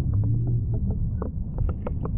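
Water splashing and dripping at the exit of a water slide: a low rumble of running water with many quick, sharp drip and splash ticks, most of them in the second half.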